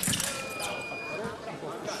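Sharp clatter of sabre blades and fencers' feet as both fencers attack at once. Then the electric scoring apparatus gives a steady beep, just under a second long, as both hit lights come on. Short shouts of "allez" follow near the end.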